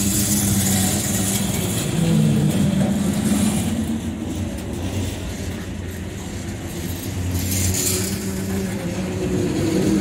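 Freight train rolling past: lumber-loaded centerbeam flatcars running on steel wheels and rails, a continuous rumble with a steady low hum and bursts of high hiss.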